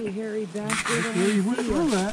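People's voices talking, with a short rush of noise about a second in.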